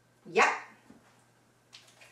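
A dog barks once, loud and short, about a third of a second in.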